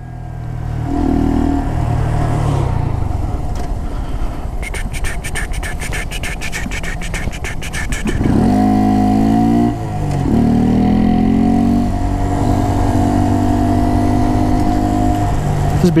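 Honda Grom's 125 cc single-cylinder engine running while riding, with wind noise, pulling up in pitch twice about halfway through with a short dip between the two pulls, as it accelerates through a gear change. A rapid ticking, about seven a second, runs for a few seconds just before the first pull.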